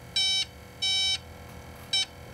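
Heathkit MI-2901 Fish Spotter's sound-alert alarm beeping: two short, high-pitched electronic beeps and the start of a third near the end. The alarm has been set and is going off.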